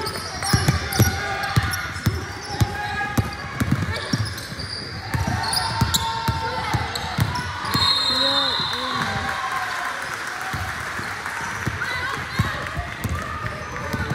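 A basketball dribbled on a hardwood gym floor, a steady run of bounces about two to three a second in the first few seconds, under players' and spectators' voices echoing in a large gym.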